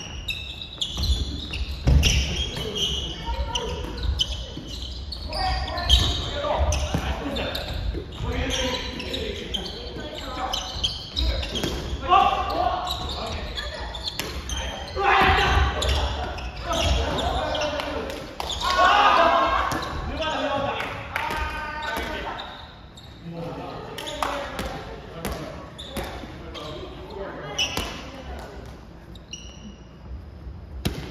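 Players' voices calling out across a large gymnasium hall, mixed with repeated hits of a soft volleyball being passed and struck during a rally.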